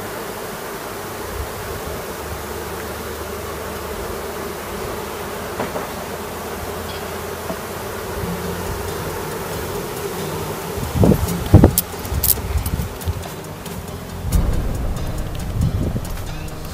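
A caught swarm of honey bees buzzing steadily on the open top bars of a wooden hive box. A few loud knocks and sharp clicks come about eleven seconds in, with more bumps near the end.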